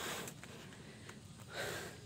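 Faint breathing of a tired person climbing a steep slope, with one short, louder exhale about one and a half seconds in.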